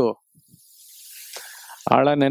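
A man's breath drawn in close to a headset microphone, a soft hiss that swells for about a second and a half between spoken phrases. His speech cuts off just after the start and resumes near the end.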